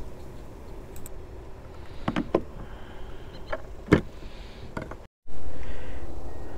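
Small sharp metal clicks from fishing pliers pinching a Norton quick-twist lure snap closed, about five of them scattered over several seconds, over a low steady background hiss. Just after five seconds the sound drops out briefly and comes back as a louder steady rush.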